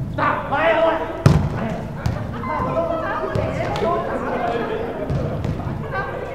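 Voices talking and calling across a gym, with one sharp, loud smack of a volleyball about a second in and a few fainter knocks after it.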